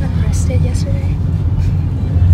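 Steady low rumble of a car heard from inside its cabin as it drives, with faint voices over it.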